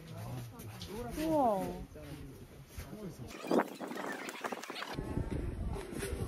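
People's voices, with a long swooping up-and-down exclamation about a second in. The sound changes abruptly a little over three seconds in.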